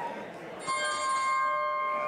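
Wrestling ring bell struck once about two-thirds of a second in, ringing on with several clear, steady tones that slowly fade: the opening bell starting the match.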